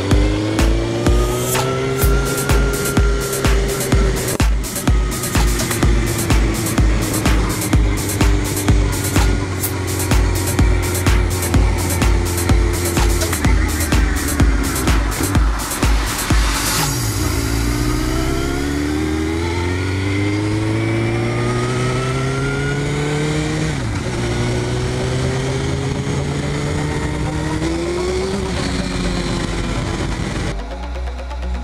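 Suzuki GSX-R1000's inline-four engine heard from the rider's seat, cruising at first under music with a steady beat. About halfway in the music stops and the engine pulls hard through the gears, its pitch climbing and then dropping at each upshift, three times.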